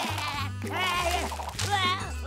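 A cartoon character's high, quavering cries, heard twice, over background music with a steady bass.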